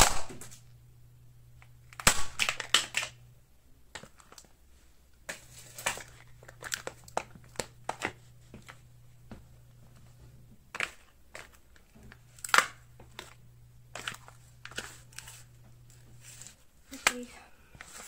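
Rigid clear plastic container cracking and crunching under a sneaker sole on a hard floor. A sharp crack at the start, a dense burst of crackling about two seconds in, then many scattered crackles and snaps as the broken pieces are trodden, two of them louder near the end of that stretch.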